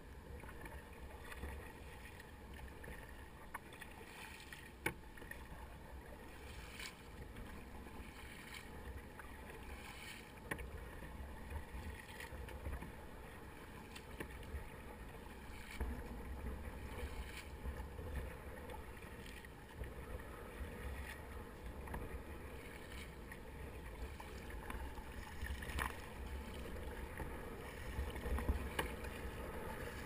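Double-bladed kayak paddle dipping and splashing in the sea beside a Fluid Bamba sit-on-top kayak, short water strokes every second or two over a constant low rumble.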